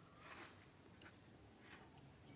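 Near silence: faint outdoor ambience with two brief, faint hissy sounds, one shortly after the start and one near the end.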